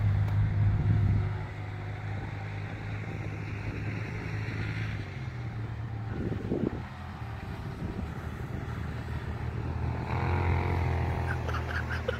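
A vehicle engine running with a steady low hum. It is louder for about the first second, drops back, and swells again from about ten seconds in.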